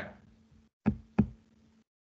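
Two sharp clicks about a third of a second apart, over a faint steady hum that cuts off near the end.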